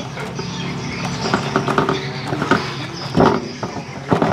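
Clothes being hand-washed in soapy water in a large metal basin: wet fabric sloshing and squelching as it is scrubbed and squeezed, with irregular splashes.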